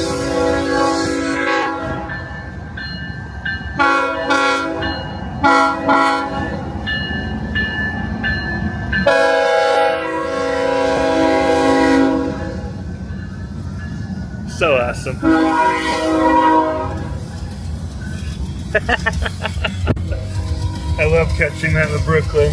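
Freight train locomotive horn sounded for onlookers in several blasts, the longest lasting about three seconds, over the steady low rumble of the passing train.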